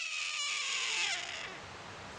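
Red-tailed hawk giving one long, raspy scream that starts high and falls in pitch, fading out about a second and a half in.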